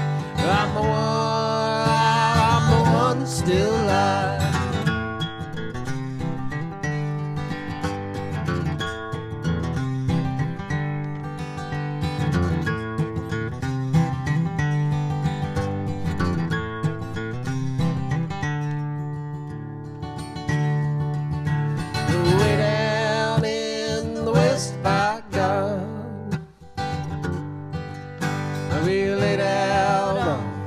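Acoustic guitar strumming a bluegrass-style folk song. A woman's voice sings over it near the start and again in the last third, sliding in pitch.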